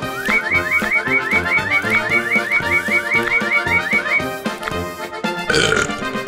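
Cartoon background music with a fast run of short rising squeaky sweeps, about five a second, lasting about four seconds, as a sound effect for the mole rapidly eating apples down to their cores. Near the end, a short burp from the cartoon mole.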